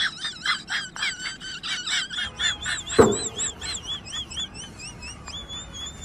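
Rapid, high bird chirping, several short rising-and-falling chirps a second, thinning out and growing fainter in the second half. A single sharp knock sounds about three seconds in.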